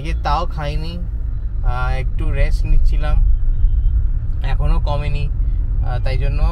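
A man talking inside a moving car, over the car's steady low rumble of engine and road noise in the cabin.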